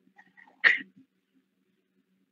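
A person sneezing once: a single short, sharp burst about two-thirds of a second in, with a few faint small sounds just before it.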